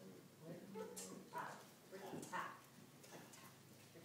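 Faint, indistinct talking: a few short, quiet phrases with pauses between them.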